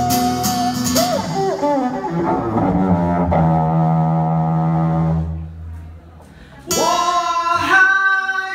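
Live duo of acoustic guitar and cello with a man singing. The cello holds a long low note that fades to a brief hush about five to six seconds in. Then the guitar and voice come back in loudly near the seven-second mark.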